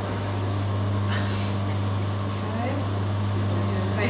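A steady low hum with a fainter second tone above it, unchanging throughout, with faint voices murmuring over it.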